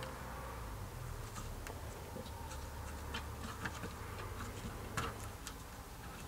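Faint hand-stitching sounds: light, irregular clicks and rustles of needles and thick thread being drawn through leather stitch holes, over a low steady hum.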